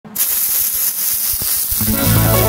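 MIG welding arc laying a bead on steel tubing: a steady crackling hiss that starts a moment in. Guitar music comes in near the end.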